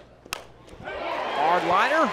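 A softball bat cracks sharply against the ball about a third of a second in. Crowd noise then swells and the play-by-play announcer's voice comes in.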